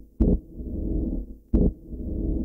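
Two deep booming thuds about 1.3 seconds apart, each followed by a low rumbling drone that swells and fades: a slow, ominous soundtrack pulse like a heartbeat.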